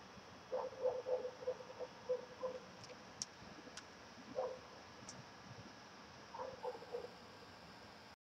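A dog barking some way off, faint: a run of short barks in the first few seconds, a single bark in the middle and a few more near the end. A few faint ticks come in between.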